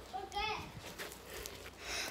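A girl's short, faint vocal sound about half a second in, then quiet room noise.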